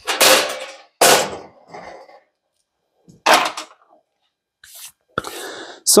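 Metal breaker-panel cover being handled and set down: a series of sharp knocks and clatters, three spaced a second or two apart and a last click near the end.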